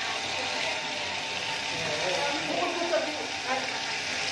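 People talking over a steady rushing hiss of water being flushed out of a refilling station's filter tank as waste water.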